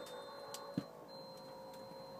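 Quiet room tone with a faint steady hum and two small clicks close together in the first second.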